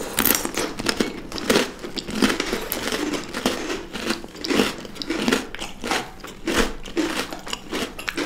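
Close-miked chewing and biting of chocolate-coated treats by two people, a dense uneven run of wet, clicky mouth sounds with occasional crunches, a few strokes a second.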